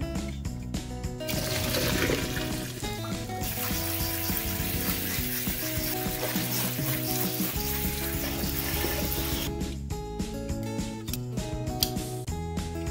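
Cold tap water running onto blanched garlic scapes in a metal colander, starting about a second in, louder for its first two seconds, and stopping near the end. Background music plays throughout.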